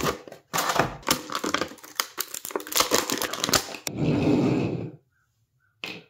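Clear plastic blister tray of a Hasbro action-figure package crackling and snapping in rapid clicks as it is handled and pulled apart to free the figure, then a fuller rustle of plastic for about a second.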